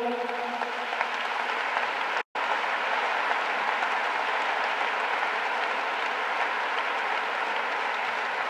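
Audience applauding steadily, with a brief total break in the sound about two seconds in.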